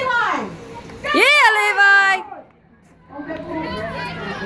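Unintelligible shouting from young players and sideline spectators during a junior rugby league game. About a second in comes a loud, high-pitched shout lasting about a second. A brief quiet gap follows before the calling resumes.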